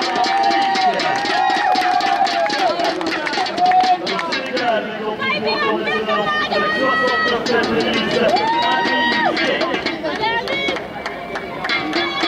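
A voice and music over a stadium public-address system, with held, drawn-out notes and a crowd clapping.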